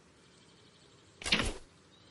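A single sudden loud burst about a second in, lasting under half a second, over faint night ambience with insects.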